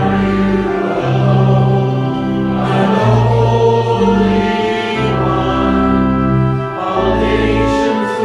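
Congregation singing a hymn-style scripture song with organ accompaniment. Long, held bass notes change every second or two under the voices.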